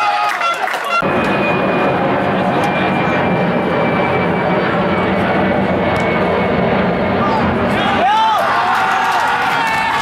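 Jet aircraft passing low overhead: a loud, steady engine roar with a faint whine slowly falling in pitch, starting abruptly about a second in. Near the end, shouting voices break in over it.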